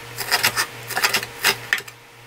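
Chef's knife chopping seaweed stems on a wooden cutting board: quick, uneven knocks of the blade striking the board, about four a second.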